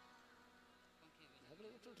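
Near silence: a faint steady electrical buzz from the sound system. A man's voice comes in over the loudspeaker near the end.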